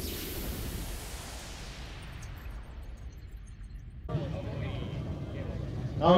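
A swooshing intro sound effect fading away, then a sudden cut about four seconds in to open-air background noise with a man's voice speaking at a distance.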